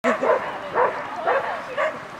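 A dog barking, about five short barks in quick succession.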